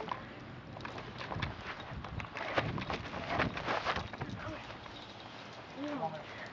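Footsteps and rustling through grass: a run of soft, irregular taps.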